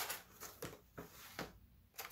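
Cardboard box and clear plastic blister insert being handled as the box is opened, giving a handful of brief crinkles and rustles.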